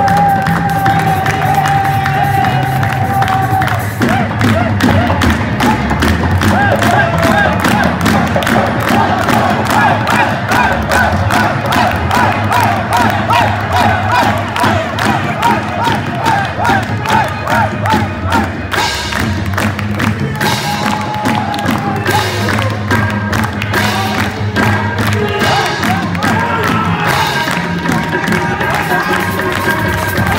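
Live qawwali music: singing over harmonium and tabla, opening on a long held note and moving into fast ornamented runs, with a crowd cheering and shouting along.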